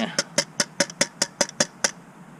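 An upturned food can of stew knocked repeatedly against a camping cook pot to shake out the last of its contents: about ten sharp, tinny taps, roughly five a second, stopping just before the end.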